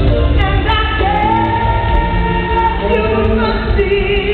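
A woman singing a soul ballad live into a microphone over her band. She holds one long high note from about a second in, then drops to a lower held note near the end.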